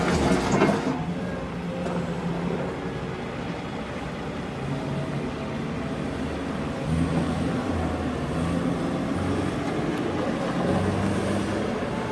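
2005 Caterpillar 242B skid steer's diesel engine running as the machine drives and turns, its low hum swelling and easing. There is a brief louder rush of noise in the first second.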